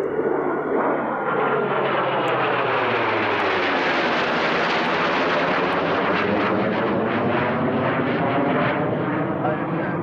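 Jet noise from an F/A-18 Hornet's twin engines as it climbs away overhead after take-off: a loud, steady rush with a sweeping, phasing sound as it passes, brightest about halfway through.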